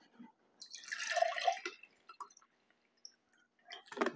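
Diet cranberry grape juice poured from a plastic bottle into a glass: one splashing pour lasting about a second, followed by a few faint clicks.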